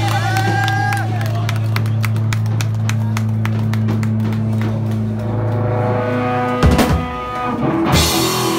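A live rock band ends a song: the electric guitar and bass hold one low note while the drums play a run of quick hits that get faster. Big drum and cymbal hits land at about seven seconds. A voice shouts over it in the first second.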